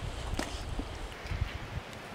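Wind buffeting the microphone outdoors: a low, noisy rumble that dies away shortly before the end.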